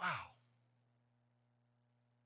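A man's short, audible sigh, a voiced exhale falling in pitch and over within half a second, followed by near silence with a faint steady electrical hum.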